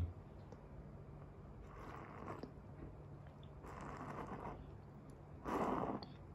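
Sipping yerba mate through a metal bombilla from a ceramic calabash: three short slurping draws, the last one, near the end, the loudest.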